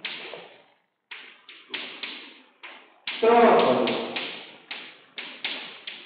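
Chalk tapping and knocking against a blackboard while writing: a string of sharp taps a few tenths of a second apart, each ringing on briefly in the room.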